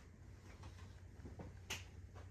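Quiet room with a low steady hum, broken by one sharp click about three quarters of the way through and a few fainter ticks.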